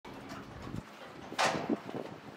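Footsteps and knocks on a boat's deck: a sharp knock about one and a half seconds in, then a softer one just after.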